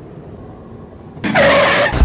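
Faint steady hum inside a car's cabin, broken near the end by a sudden harsh noise lasting well under a second.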